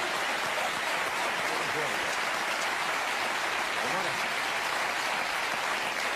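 Studio audience applauding steadily, with a few voices in the crowd, the applause dying away near the end.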